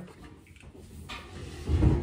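Quiet handling noise of a loaded canvas tool pouch on a countertop: a faint rustle about a second in, then a low thump near the end.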